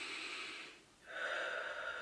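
A woman taking a deep breath in through the nose, then, after a short pause about a second in, breathing out slowly through pursed lips.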